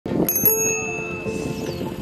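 A bicycle bell rung twice in quick succession, its ring dying away over more than a second.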